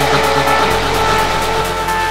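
Progressive house / techno mix: a held synth chord over a deep bass note that steps to a new pitch about two-thirds of a second in, with steady hi-hat ticks.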